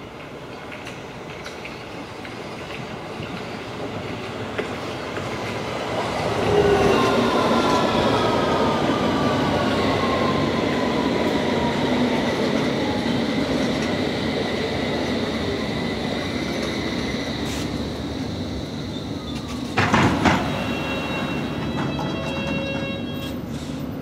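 London Underground S Stock electric train arriving and braking to a stop, its motor whine falling in pitch over the rumble of the wheels. A short loud burst of noise comes near the end.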